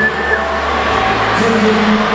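Music playing over an ice arena's sound system, with the noise of the crowd beneath it.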